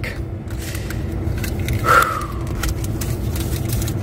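Low steady rumble of a truck idling, heard from inside the cab, with one short higher sound about two seconds in.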